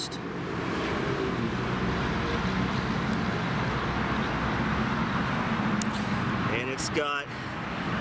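Steady noise of road traffic: a vehicle engine hum with tyre and road hiss, building in the first second and holding for several seconds.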